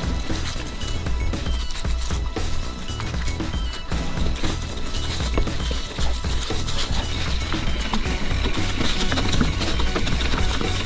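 Mountain bike rattling and knocking over a rough dirt trail, with music playing along.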